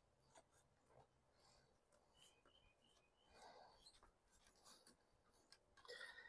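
Near silence, with only a faint row of short high chirps in the middle and a faint rustle a little later.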